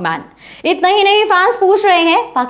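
Speech only: a woman narrating in Hindi, with a brief pause early on before her voice resumes.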